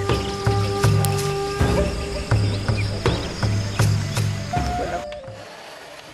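Background music with a repeating bass line and a steady beat, fading out about five seconds in.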